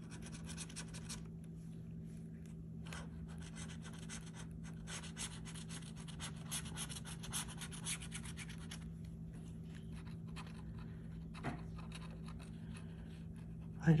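A metal bottle-opener-style scratcher scraping the coating off a paper scratch-off lottery ticket in quick, repeated strokes, over a steady low hum. The ticket's coating is hard to scratch.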